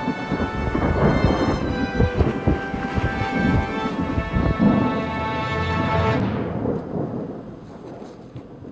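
Thunderstorm: rumbling, crackling thunder and rain, with held musical notes sounding over it. Everything fades out from about six seconds in.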